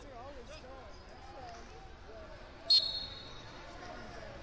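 Referee's pea whistle blown once, about two-thirds of the way in: a sharp start and then a short, shrill steady tone, starting the wrestling bout. Voices murmur in the hall before it.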